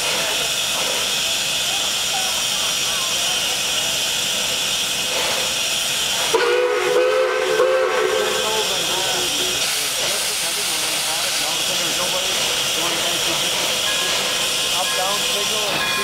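Pere Marquette 1225, a 2-8-4 Berkshire steam locomotive, hissing steadily with escaping steam while it stands. About six seconds in, a short steam whistle blast lasting under two seconds sounds over the hiss.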